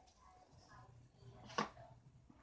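A man's faint vocal sounds while he stretches an exercise resistance band, with one sharp click about one and a half seconds in.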